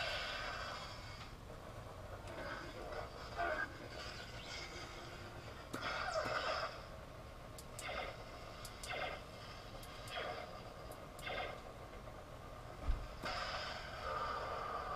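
Lightsaber sound font played through the saber's own speaker by a TeensySaber V3 board: an ignition burst at the start, then a steady electric hum with several swelling swing sounds as the blade is moved, and a sharp knock near the end.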